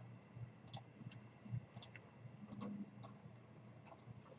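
Faint computer mouse clicks, several of them at irregular intervals.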